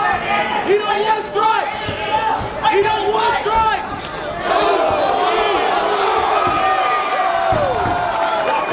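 Spectators and corner men shouting and yelling over one another. The shouts come in separate bursts at first, then swell about halfway through into a steady, louder crowd roar.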